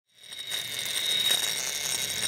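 Big-game fishing reel's drag screaming in a steady high whine as a hooked bluefin tuna pulls line off it, fading in over the first half second.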